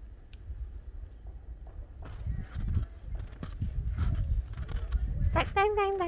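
Low rumble of wind buffeting a phone microphone during a heavy snowfall, with soft, irregular crunching of steps in fresh snow. A voice speaks briefly near the end.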